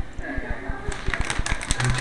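Crackling and rustling of a plastic chip packet being handled, a dense crinkle starting about a second in.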